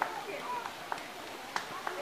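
Background chatter of several people's voices, with a few sharp clicks scattered through it.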